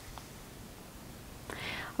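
Quiet pause with faint room tone, then a woman's soft in-breath that swells over the last half second.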